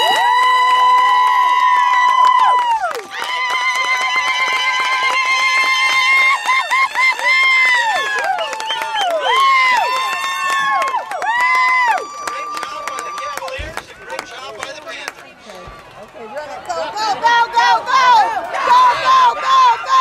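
Young players' voices yelling long drawn-out cheers: high notes held for a few seconds that drop off at the end, one after another. After a lull of fainter voices, a quick run of short shouted syllables comes near the end.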